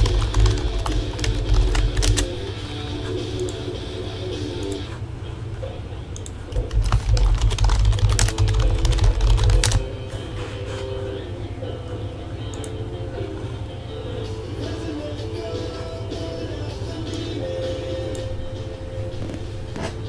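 Computer keyboard being typed on and clicked, loudest in a dense stretch from about 7 to 10 seconds in, over soft background music.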